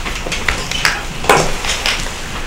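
Irregular light knocks and rustling of people moving about a meeting room, about five knocks with the loudest a little past halfway.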